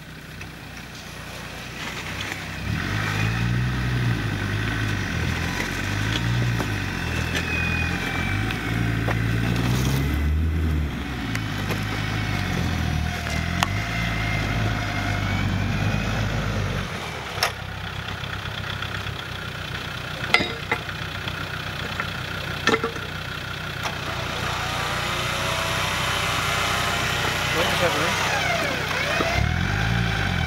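Land Rover Defender's engine revving up and down unevenly as it labours in deep mud, cutting out suddenly about halfway through, leaving a steadier low engine hum and a few sharp clicks. Near the end the engine pitch rises and falls again as it is restarted and revved.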